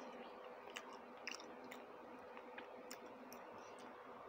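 Quiet close-up eating sounds: soft chewing and scattered small wet mouth and finger clicks as a person eats rice and curry by hand, over a faint steady hum.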